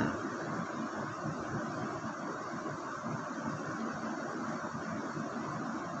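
Steady background noise, an even hiss with a low rumble under it, unchanging throughout, with no speech.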